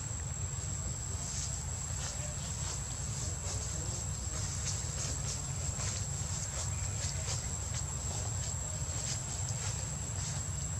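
Insects droning in one steady high-pitched tone, with scattered faint ticks and a low rumble underneath.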